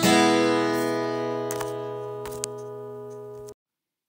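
Final strummed acoustic guitar chord of a country song, ringing on and slowly fading, then cut off suddenly about three and a half seconds in.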